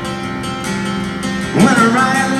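Live rock band playing a slow song: guitar holding steady chords over a sustained accompaniment. The lead singer's voice comes back in near the end.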